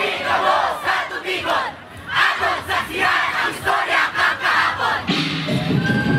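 A troupe of street dancers shouting and yelling together, many voices at once, while the drumming stops; the drums come back in about five seconds in.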